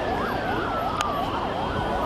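Emergency vehicle sirens: one yelping rapidly up and down, about three to four sweeps a second, over a second steady siren tone that slowly falls in pitch, with a steady rush of background noise.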